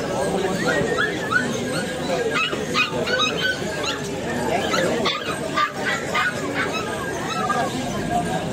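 Puppies giving many short, high-pitched cries over the chatter of a crowd.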